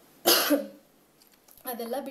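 A woman coughs once, a single short, sharp cough about a quarter second in.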